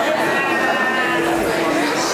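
Voices holding long, steady low notes that break off and start again a few times, over crowd chatter.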